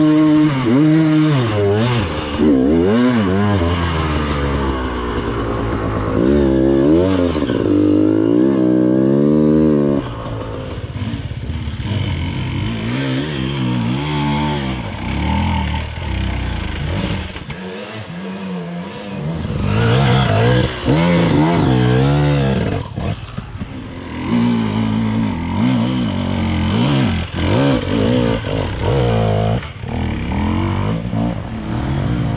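Enduro dirt bike engine revving hard and repeatedly on a steep muddy climb, its pitch swinging up and down about once a second as the throttle is worked. After about ten seconds it drops to a quieter, more uneven run with further bursts of revving.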